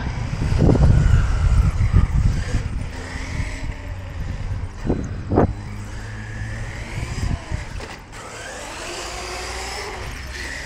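Traxxas Sledge RC truggy driving on concrete: its brushless electric motor whines and glides up and down in pitch as it speeds up and slows, over the rumble of its tyres, loudest in the first couple of seconds. Two short sharp sounds come about five seconds in.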